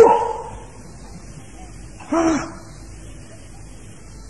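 A dog barking twice: a loud single bark right at the start and a quieter one about two seconds later.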